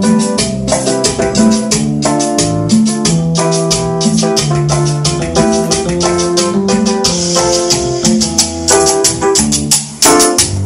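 Instrumental karaoke backing track playing through the karaoke machine's speakers: a keyboard melody over a steady percussion beat, with no vocal.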